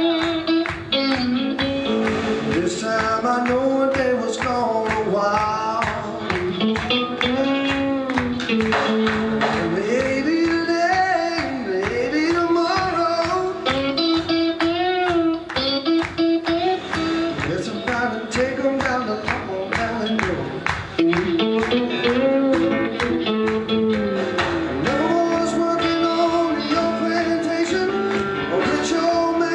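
Live blues-rock band playing electric guitar, bass guitar, drums and keyboard, with a lead melody that bends and slides in pitch over the backing.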